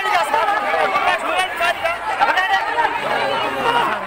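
A crowd of men shouting and talking over one another, many raised voices at once in an agitated street scuffle.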